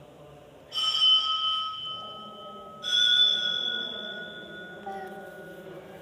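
Struck metal ringing twice, about two seconds apart, each strike sustaining a bell-like ring that slowly fades; the second strike rings slightly higher in pitch.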